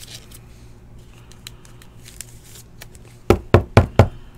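Quiet handling of trading cards, then four sharp knocks in quick succession near the end as cards are knocked against the tabletop.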